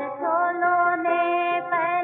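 A woman's singing voice in an old Hindi film song, holding one long note with a slight waver, then moving to a new note near the end, over a thin musical accompaniment.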